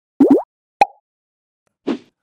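Cartoon-style sound effects: two quick rising "bloop" glides, then a sharp pop with a short ringing tone a little under a second in. A brief softer burst follows near the end.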